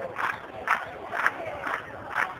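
A crowd chanting together over steady rhythmic clapping, about two beats a second.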